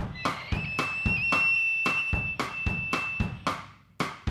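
Instrumental rock music: a drum kit plays a steady beat while a single high note is held for about three seconds, then drops out.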